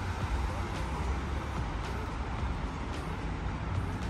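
Steady city traffic noise on a wet street, with a low, uneven rumble underneath.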